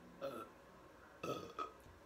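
A person burping: one short burp about a second and a quarter in, among a couple of faint vocal sounds.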